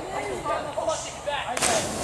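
A person letting go of a rope swing and plunging into a river: one sharp splash about a second and a half in, followed by the wash of churned water. Voices call out before the splash.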